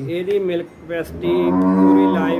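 Holstein Friesian cow mooing: one long, steady moo starting about a second in.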